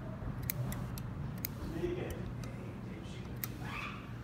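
Fine fly-tying scissors snipping a few times, sharp short clicks as they trim the leather worm body and foam egg of a fly in the vise, over a steady low hum.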